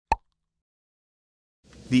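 A single short pop, an editing sound effect on an animated logo transition, followed by silence; near the end a faint noise swells up into the start of a voice.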